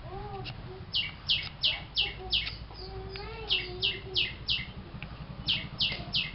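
A bird calling: runs of short, high chirps that drop in pitch, about three a second, in three runs of four or five.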